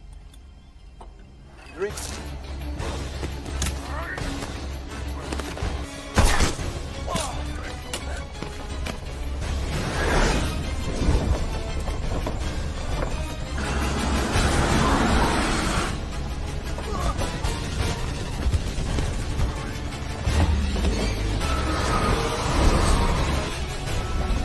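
Film soundtrack: music over a deep steady rumble, broken by many sharp hits and crashes. The hardest hit comes about six seconds in, and a noisy surge follows about two-thirds of the way through.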